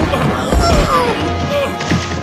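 Cartoon fight sound effects, whacks and a crash, layered over dramatic background music.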